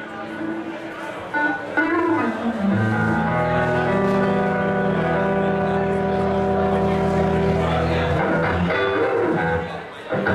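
Electric guitar with the band starting to play: a few scattered notes at first, then a full chord held steadily for about five seconds, breaking into separate notes near the end.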